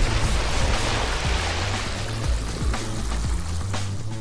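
A squeeze bottle spraying a jet of blue liquid batter: a continuous spray, strongest at first and trailing off over a few seconds. Background music with a steady low bass runs underneath.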